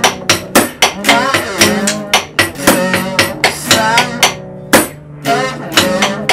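Live stripped-down band music: drumsticks beat a plastic paint bucket as the drum in a steady fast rhythm, over a strummed electric guitar and a sung vocal. The bucket beat drops out for a moment about four seconds in, then comes back with a hard hit.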